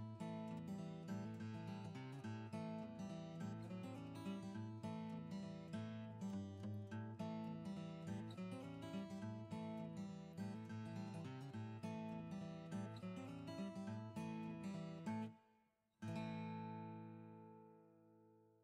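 Background music of acoustic guitar, picked and strummed. It breaks off briefly near the end, then one last chord rings out and fades.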